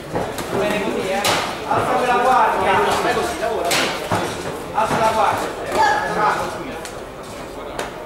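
Voices shouting in a large echoing hall during a boxing bout, with a few sharp smacks of gloved punches landing.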